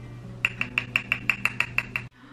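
A quick, even run of about nine sharp, ringing clicks, about six a second, over a low steady hum, starting about half a second in and cutting off suddenly at the end.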